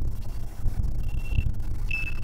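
Low, uneven rumble of a car driving on a city street, heard from inside the cabin. A brief thin high tone sounds about a second in and again near the end.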